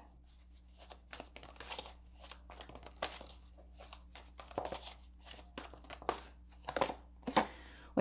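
A deck of oracle cards being handled and shuffled by hand: a run of soft, papery card flicks and rustles, with a faint steady room hum beneath.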